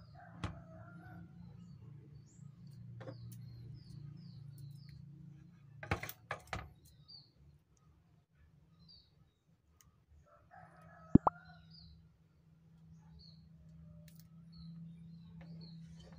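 Birds calling in the background, with short high chirps scattered throughout. There is a cluster of sharp knocks about six seconds in and a single loud sharp click about eleven seconds in, which is the loudest sound.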